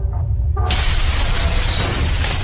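Logo-intro sound effect: a steady deep rumble, then, about two-thirds of a second in, a sudden loud shattering crash that carries on as crackling debris, with music underneath.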